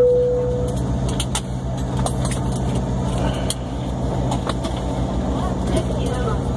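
Airliner cabin noise: the steady low hum and rush of the aircraft while it taxis, with scattered small clicks and knocks. A single cabin chime is fading away at the start.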